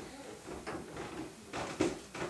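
Manual caulking gun clicking a few times as its trigger is worked to squeeze silicone into masonry anchors in a tile wall: one click near the middle and a couple toward the end.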